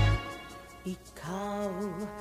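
Karaoke backing music for a slow ballad. The full accompaniment and bass drop away at the start, leaving a quiet passage with a single held melody line that bends in pitch.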